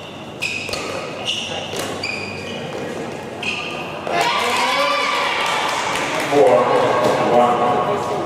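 A badminton rally: sneakers squeak briefly on the court and rackets strike the shuttlecock with sharp clicks. About halfway through, loud shouting and cheering from voices in the hall takes over as the rally ends.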